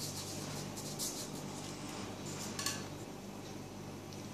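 Faint rubbing and scraping of a glue stick on paper cutouts, with soft paper rustles and a small click about two and a half seconds in, over a steady low hum.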